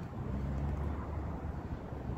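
Steady low outdoor rumble that swells slightly in the middle, without clear pitch or separate events.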